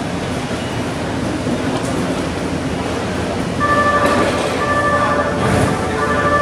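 An E259 series Narita Express train approaching along the platform of an underground station: a steady rumble that grows louder, with a steady high-pitched squeal starting a little past halfway and breaking off briefly twice.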